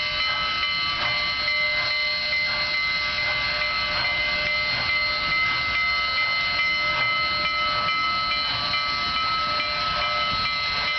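Union Pacific 844, an ALCO 4-8-4 Northern steam locomotive, passing slowly with its bell ringing steadily, struck over and over, over a hiss of steam from the cylinders and soft exhaust chuffs.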